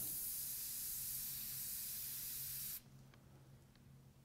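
Airbrush spraying, a steady air hiss that cuts off abruptly about three-quarters of the way through as the trigger is released. A faint low hum continues underneath.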